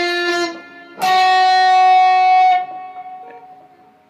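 Capoed guitar played as single picked notes of an intro riff: one note is ringing at the start, and a second, higher note is plucked about a second in, rings out and fades.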